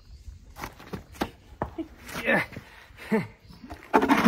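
A man's short wordless vocal sounds, several brief falling-pitched grunts of effort, with a few sharp knocks, as he works to lift a heavy horse's leg that it doesn't want to move.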